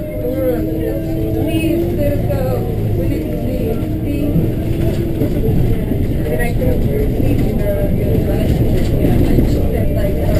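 Bus running and rolling along a city road, a steady engine and road rumble heard from inside the bus, with indistinct voices of passengers mixed in.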